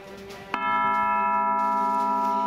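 A bell-like chord from a TV news sting, entering suddenly about half a second in and then held steady. It marks the election results coming up on screen.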